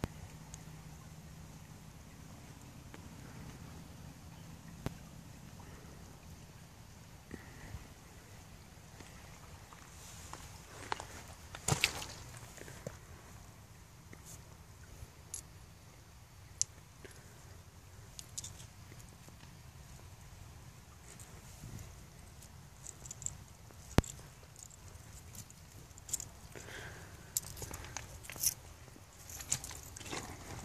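Quiet handling sounds: scattered faint clicks and light scrapes of a hand working through soil and small stone flakes, with a cluster about twelve seconds in and more of them near the end.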